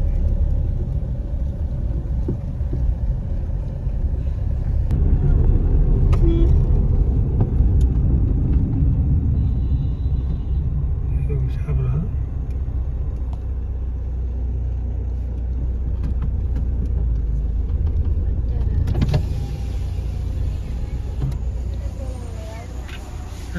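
Steady low rumble of a car driving, heard from inside the cabin. A few seconds before the end the sound opens up and becomes brighter as the car slows.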